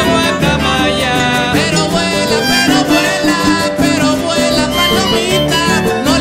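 Son jarocho ensemble playing live: an arpa jarocha picks out a stepping bass line and melody while jaranas are strummed in a steady, driving rhythm.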